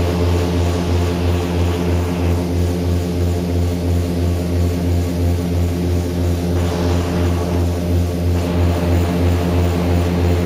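Twin propeller engines of a Beechcraft Duchess light twin running steadily, heard from inside the cockpit as a constant low drone with overtones. The pitch holds level throughout, while a higher hiss drops away about two seconds in and returns around seven seconds in.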